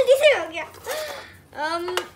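Children talking with high, lively voices, the words unclear, ending in a drawn-out rising vocal sound.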